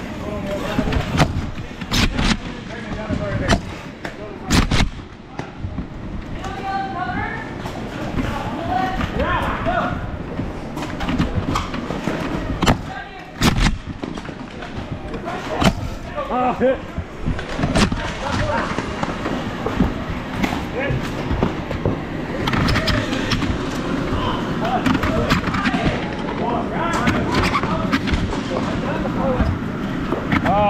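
Voices of players calling out in the background, with sharp clacks scattered through, the loudest in the first five seconds and about 13 seconds in: foam dart blasters being pumped and fired.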